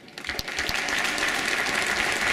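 Audience applauding, the clapping starting a moment in and quickly swelling to steady, dense applause.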